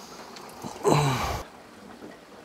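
Water running noisily down the CADE 500 aquarium's overflow drain while its gate valve is being closed, the drain not yet tuned to the return flow. A short sigh about a second in.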